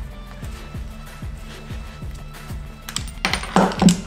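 Background music, then near the end a few sharp metallic clinks as a copper tubing cutter and the short cut-off stub of copper pipe land on a wooden workbench.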